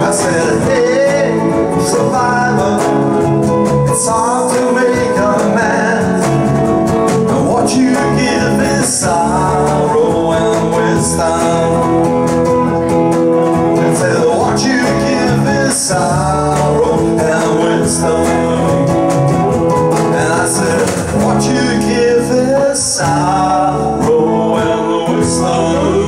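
Live band playing: guitar, bass guitar and cajon, running on steadily without a break.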